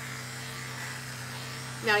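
Corded electric pet clippers buzzing steadily as they shave the fur off a dog's chest around a hot spot. The hum holds one even pitch throughout.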